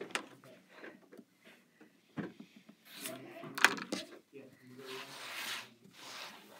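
Rotary cutter and acrylic quilting ruler worked on a cutting mat: light clicks and taps as the ruler is handled, one sharp tap past the middle, and a short hissing scrape near the end as the blade slices through cotton fabric.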